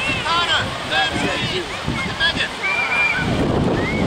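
Scattered high-pitched calls and shouts of children and spectators across an open field, no clear words. From about three seconds in, wind buffets the microphone.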